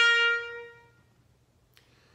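The closing note of a trumpet intro tune, held and fading away over about a second, followed by near silence with one faint click near the end.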